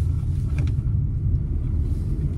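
Steady low rumble of a car's engine and tyres, heard from inside the cabin as it is steered through a tight cone slalom.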